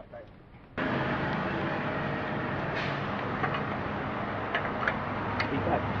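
A steady outdoor background noise, like street traffic, with faint voices in it. It cuts in sharply about a second in and stops abruptly at the end, as at an edit.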